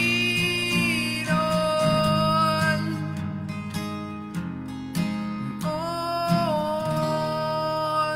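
A man singing long held notes over a strummed acoustic guitar, with a run of guitar strums between the two held vocal phrases.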